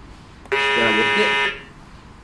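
Judo match buzzer sounding once for about a second, a harsh electronic tone that starts and cuts off sharply.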